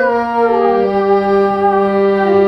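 Harmonium playing held reedy notes, stepping down to a lower note about half a second in.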